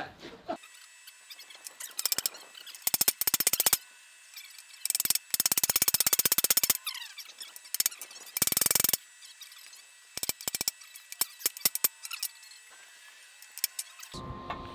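Hammer striking hot steel on an anvil in several quick runs of blows, separated by short pauses, with a bright metallic ring.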